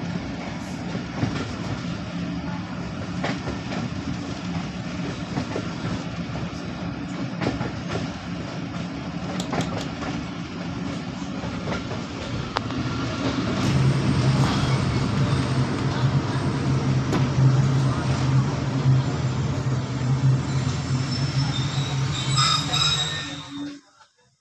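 A passenger train running, heard from inside an open-windowed coach: a steady rumble of wheels on rail with occasional sharp clicks. About halfway through it grows louder with a steady low hum, then it cuts off suddenly just before the end.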